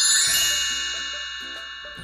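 Short bell-like chime sting: a bright chord of ringing tones struck at the start, with a few soft lower notes under it, fading away slowly over about two and a half seconds.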